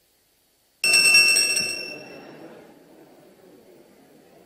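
A bell rings sharply about a second in, after a moment of silence, and dies away over about a second and a half, over the steady murmur of a large chamber full of people.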